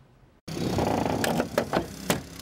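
An engine starts being heard suddenly about half a second in, running steadily at an extrication scene, with a few sharp metallic knocks in the second half.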